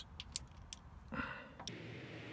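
Faint, sparse clicks and taps of a ratchet and socket loosening the 10 mm bolts of a timing chain guide on a Honda K24 engine, with a short soft rustle about a second in.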